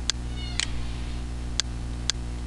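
Sharp clicks about two a second, some beats missing, over a steady low hum. About half a second in comes a brief, faint high cry that falls in pitch.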